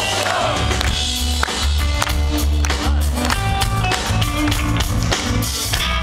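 Live punk rock band playing electric guitars, bass guitar and drums, with a heavy, shifting bass line and steady drum strokes, recorded loudly from the crowd.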